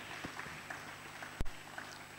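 Faint steady hall background hiss with a few soft knocks and one sharp low thump about one and a half seconds in.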